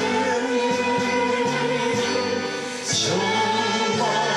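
A man singing a Korean song into a handheld microphone over band accompaniment with sustained choir-like backing, played through a TV's speakers. The music drops back briefly just before three seconds in, then comes in again with a bright crash.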